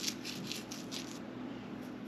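Dried oregano being crumbled between the fingertips: a run of soft, quick crackles, thinning out after about a second.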